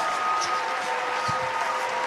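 Held background music tones, steady and sustained, under the even noise of a large indoor crowd.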